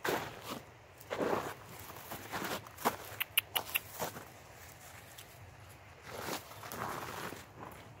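Footsteps in shallow snow: irregular steps with a few sharp clicks about three seconds in.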